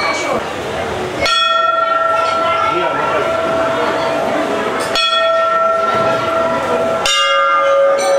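Temple bells struck three times, a few seconds apart, each strike ringing on with a long sustained tone; the last strike is lower in pitch, from a different bell. A crowd's chatter runs underneath.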